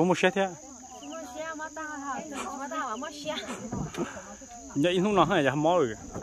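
A steady, high-pitched chorus of insects chirring without a break, heard under people's voices.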